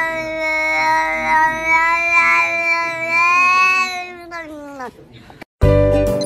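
A cat's long, drawn-out yowl held on one steady pitch for about four seconds, then sliding down in pitch and fading out. Music with jingling notes cuts in abruptly near the end.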